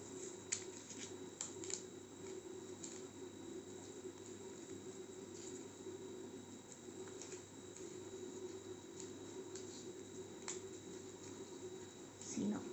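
Paper tape and rolled newspaper crinkling faintly as they are handled and wrapped, with a few small clicks and crackles scattered through, over a steady low hum.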